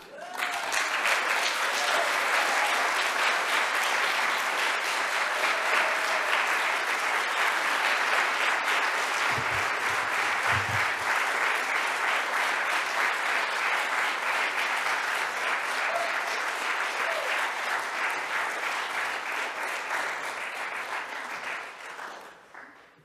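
Audience applauding steadily in a hall for about twenty seconds, dying away at the end. A couple of low thumps come about halfway through.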